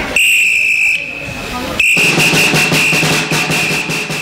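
A whistle blown in two long, steady blasts: the first lasts about a second, and the second starts about two seconds in and holds on. Drumming plays under it.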